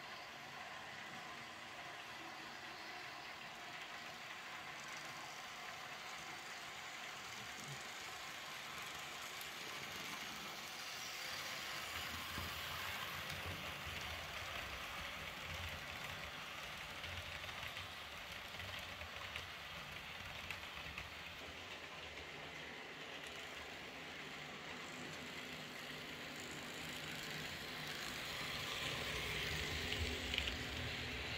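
Märklin H0 model passenger train running past on the layout: the wheels roll and click over the metal track, and the locomotive's electric motor runs. The model has no sound module, so this is its plain mechanical running noise. It grows louder as the coaches pass close by in the middle and again near the end.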